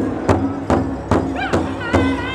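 Large powwow drum struck in unison by a ring of drummers with padded sticks, a steady beat of about two and a half strokes a second. A high voice comes in near the end.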